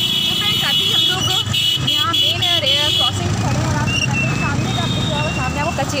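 Small road vehicles' engines running close by, with a vehicle horn held for about three seconds at the start and a shorter horn tone a little later, over background voices.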